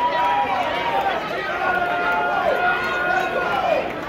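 Ringside crowd of spectators, many voices talking and calling over one another at once.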